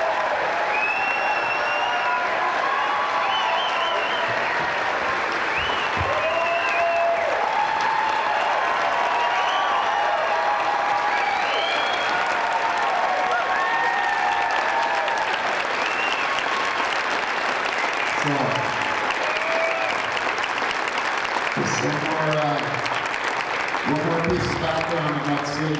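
Large theatre audience applauding steadily, with cheers and whoops rising over the clapping for most of it.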